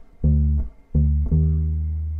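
Electric bass with flatwound strings played alone: three plucked low notes, the first two short and the third held and ringing.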